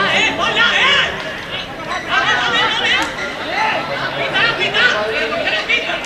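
Several spectators close by talking over one another: loud, indistinct chatter.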